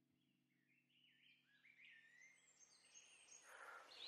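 Near silence, then faint birdsong fading in from about a second in: a run of short, rising chirps that grow gradually louder.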